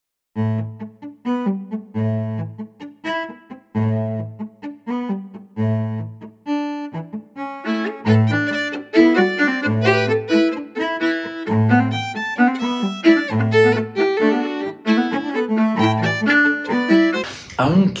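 String trio music: a solo cello plays a loud, driving eighth-note figure that keeps returning to a low note. About eight seconds in, the violin and viola come in together and the texture thickens.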